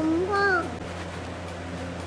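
A cat meowing: the drawn-out end of one long call, then a short rising-and-falling note that stops under a second in.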